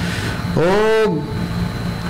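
A man's voice holding a drawn-out hesitation sound between phrases, a long 'uhh' that rises and then levels off before trailing into a low hum.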